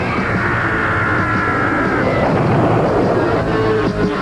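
Cartoon soundtrack of rock music with sound effects laid over it: a high held tone for about two seconds that cuts off, then a burst of noise as dust clouds fill the picture.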